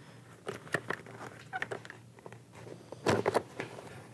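Foam-and-fabric cheek pad being pushed back into an Icon Airflite motorcycle helmet's liner by hand: rubbing and rustling with a few light clicks in the first second or two, then a louder cluster of clicks and knocks about three seconds in as the pad is pressed home.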